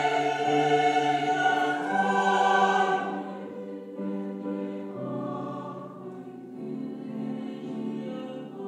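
Mixed vocal ensemble singing held chords with piano accompaniment, loud for the first three seconds and then softer.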